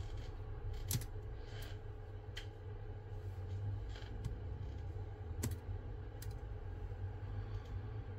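A plastic spudger prying flex-cable connectors off a Samsung Galaxy S24 Ultra's motherboard: a series of small, irregular clicks as the connectors pop loose and the tool touches the board, the sharpest about a second in and about five and a half seconds in. A steady low hum runs underneath.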